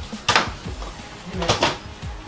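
Nerf foam-dart blaster shots: a sharp crack about a third of a second in, then two quick cracks close together around a second and a half in.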